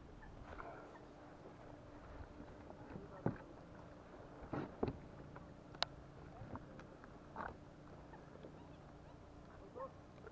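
Faint, scattered knocks and clicks from a fishing rod, reel and kayak being handled while a fish is played on the line, mostly in the middle of the stretch, the sharpest click a little before six seconds in.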